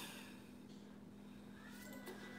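Near silence: room tone with a steady low hum, and a faint thin high tone coming in near the end.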